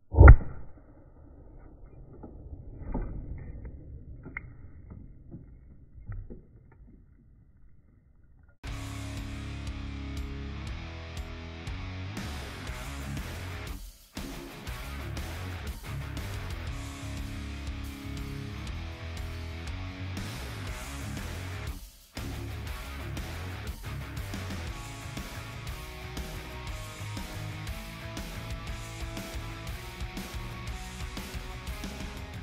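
A 12-gauge buckshot shell fired loose in a jig by a string-pulled firing pin, blasting through a ballistic-gel hand: one sharp, loud bang, with a fainter knock about three seconds later. From about nine seconds in, guitar background music plays.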